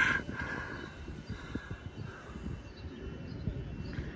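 Outdoor ambience: a steady low rumble with faint, scattered far-off sounds higher up.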